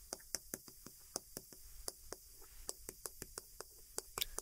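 Chalk tapping on a chalkboard as characters are written: a faint, irregular series of short taps, several a second.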